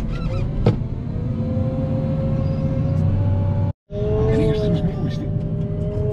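Wheel loader's engine and hydraulics running, heard from inside the cab: a steady low rumble with a thin whine that rises slightly, and a single click about a second in. A brief dropout just before four seconds in, then the machine running on with a two-note whine.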